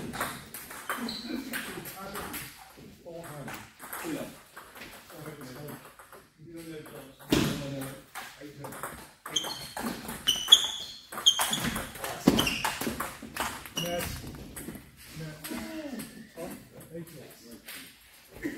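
Table tennis ball being played in a rally, clicking off paddles and the table in quick irregular hits, with a few short high squeaks near the middle. Voices talk in the hall alongside.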